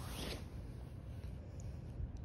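A brief rasping rustle as a used adhesive detox foot pad is handled near the start, then low room noise.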